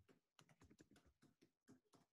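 Very faint computer keyboard typing: a run of soft, irregular key clicks.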